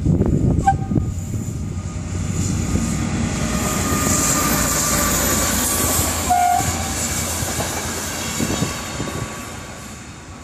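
Locomotive-hauled Intercity passenger train passing close by, its wheels running on the rails in a steady loud noise that builds to its loudest around the middle and fades toward the end. A brief high tone sounds about six seconds in.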